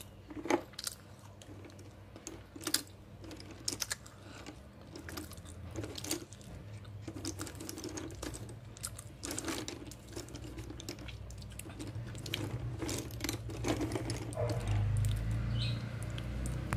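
Slate pencils clicking and clattering against one another in irregular taps as a hand rummages through a cardboard box full of them, with a low rumble and the handling noise growing louder over the last few seconds.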